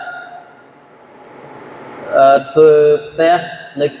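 A man's voice: a pause of about two seconds with only faint hiss, then he resumes with a drawn-out hesitation sound and long, held syllables.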